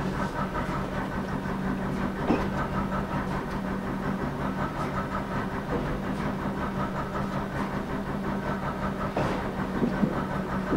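A slow-moving train heard from the front cab: its engine running with a steady hum, with a few clicks from the wheels on the track.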